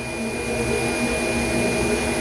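Steady rushing noise of a running machine, with a faint high whine held throughout.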